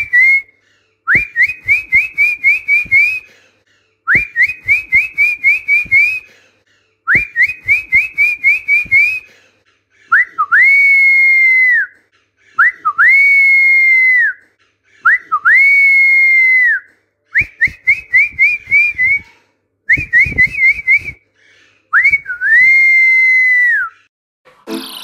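Person whistling a parrot-training whistle, repeated over and over. There are runs of about seven quick rising whistle notes lasting about two seconds, and long held whistles of about two seconds that start with an upward flick, hold steady, and drop away at the end.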